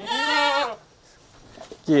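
A young Kaligesing Etawa crossbred goat bleating once, a wavering call of under a second. Another call or voice starts right at the end.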